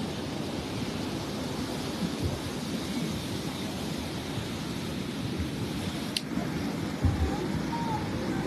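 Steady wash of small waves on a sandy beach, with wind rumbling on the microphone. A single sharp click about six seconds in.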